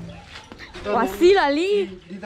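A short vocal sound about a second in, rising and falling in pitch in a wavering line.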